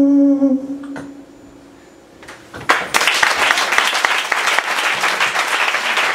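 A man's held final sung note cuts off about half a second in and dies away. After a brief hush, a small audience breaks into applause about three seconds in and keeps clapping.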